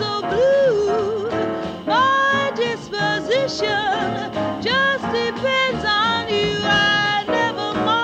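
A female jazz singer sings live with a piano trio accompanying her. Her voice slides and swoops between notes and holds several notes with a wide vibrato, most plainly near the end.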